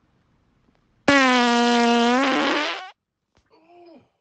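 A loud, steady-pitched fart lasting nearly two seconds, its pitch sagging slightly as it trails off. It is followed near the end by a short, fainter one with a wavering pitch.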